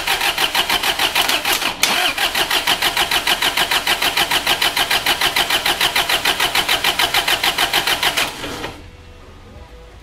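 Starter motor cranking a Mazda WL four-cylinder diesel with the glow plugs removed and the key off, so it turns over without firing: an even, fast chugging rhythm of compression strokes with a brief hitch about two seconds in, stopping near the end. It is a compression test, with the gauge on cylinder one reading about 360 psi.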